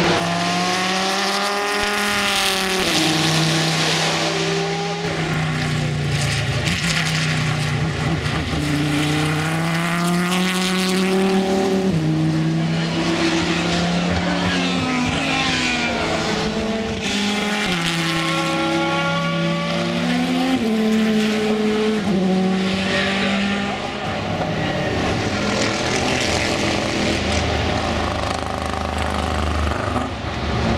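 SRT Viper race cars' V10 engines at racing speed on track. The pitch climbs hard through the gears and drops at each upshift, over several passes.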